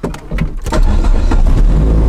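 Dodge Neon SRT-4's turbocharged four-cylinder engine starting up, preceded by a few clicks and catching within the first second, then running steadily. The engine has been logging a P0300 random-misfire code.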